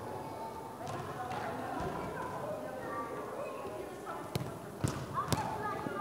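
Faint, distant voices over the background noise of an indoor sports hall. Three sharp knocks come near the end, about half a second apart.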